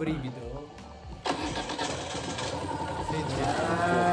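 Moto Guzzi Nevada's transverse V-twin, fitted with a pair of aftermarket Mistral silencers, starting suddenly about a second in, then running steadily. The engine is only part-warmed on a winter day.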